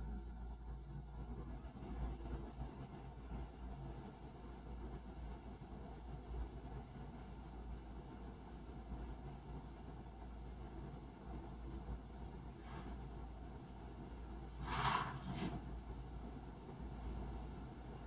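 Quiet room with a steady low hum and faint handling ticks; about fifteen seconds in, two short rustles close together.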